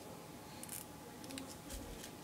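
Faint crinkling of a paper sheet being folded by hand into an origami bird, with a few short crisp crackles.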